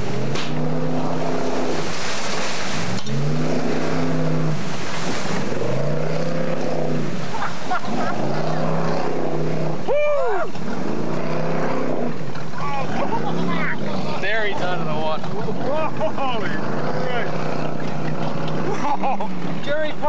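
Racing speedboat engine, its pitch rising, holding and falling again and again, about every second and a half.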